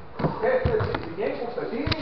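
A person talking close to the microphone, with several dull thumps on the mat nearby, the loudest near the end.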